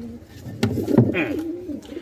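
Domestic pigeons cooing, low and wavering, with a couple of short knocks in between.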